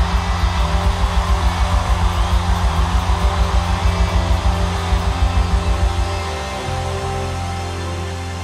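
Live worship band music: a fast, even pulsing bass beat of about five pulses a second that stops about six seconds in, leaving a held low note underneath.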